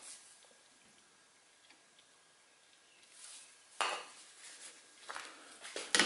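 Near silence, then a sharp metallic knock about four seconds in and a few lighter clinks as the aluminium tripod legs are handled, ahead of tapping the loose foot back in.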